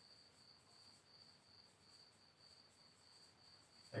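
Near silence: room tone with a faint, steady high-pitched trill.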